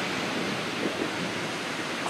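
Ocean surf: waves breaking and washing through the shallows, a steady rushing noise.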